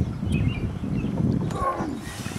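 A man's low, strained grunting as he heaves a heavy blue catfish up off the boat deck, over a steady low rumbling noise.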